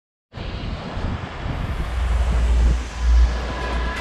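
Surf breaking on a beach with wind buffeting the microphone: a steady rushing hiss over a deep rumble, starting abruptly a moment in.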